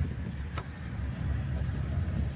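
Low, steady road rumble of a car's engine and tyres, heard from inside the moving car, with one faint click about half a second in.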